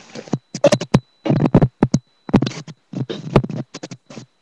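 Handling noise of a webcam being picked up and carried: short, choppy bursts of scraping and rubbing on the microphone, each cutting off sharply.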